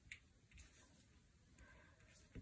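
Near silence: quiet room tone, with one faint click just after the start.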